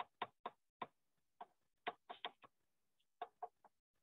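Faint, uneven clicks and taps of a stylus on a tablet screen while words are handwritten, about a dozen in four seconds, with near silence between them.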